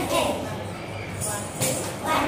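A voice over dance-class accompaniment, with a few sharp jingling percussion strokes like a tambourine or small cymbals marking the beat.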